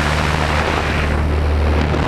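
Small propeller plane's engine running with a steady low drone, under loud wind rushing past the open jump door onto the microphone.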